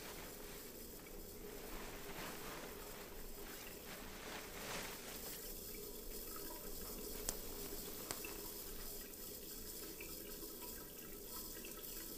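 Tap water running into a washbasin as hands are washed, a low steady wash of sound in a small tiled room, with two brief clicks about seven and eight seconds in.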